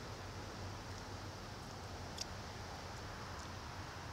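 Faint steady background hiss with a low hum, and one soft click about halfway through.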